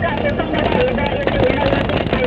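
Steady engine and road noise from a moving vehicle, with voices mixed in.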